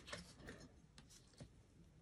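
Near silence, with a few faint light taps and rubs of hands handling a fabric square and marking pen on a cutting mat.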